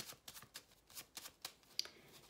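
A 32-card deck of playing cards being shuffled by hand: a run of faint, irregular card clicks.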